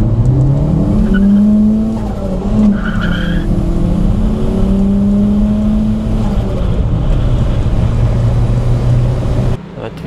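Turbocharged Škoda Felicia's 1.3-litre pushrod four-cylinder engine heard from inside the cabin under way. Its note climbs over the first second or so and holds steady, then drops to a lower steady note about six seconds in.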